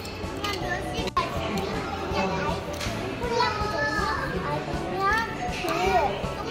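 A young child talking in a high voice, with the steady background noise of a large room behind.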